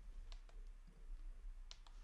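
A few faint computer mouse clicks, a pair about a third of a second in and another pair near the end, over a low steady room hum.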